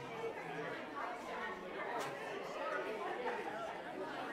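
Indistinct chatter of many people talking at once in a large hall, a congregation gathering before a service, with a single brief click about two seconds in.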